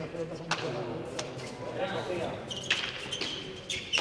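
A hard pelota ball being struck by hand and cracking against the frontón wall and court during a rally: several sharp smacks about a second apart, over a murmur of voices.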